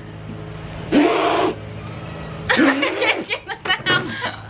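A breathy burst of laughter, then a run of quick, pulsing giggles, over a steady low hum in the background.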